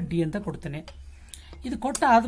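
Speech: a person talking, with a short pause about halfway through.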